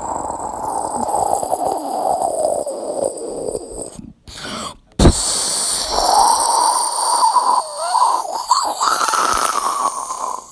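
A person making missile-and-explosion sound effects with the mouth. A long, noisy whoosh breaks off just after four seconds, a sharp crack hits about a second later, and a second long stretch of noise follows, with a wavering tone in it near the end.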